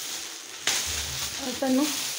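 Foil gift wrap and plastic packaging crinkling and rustling as a present is unwrapped by hand. The rustling grows louder about two-thirds of a second in, and a brief voice sound comes about one and a half seconds in.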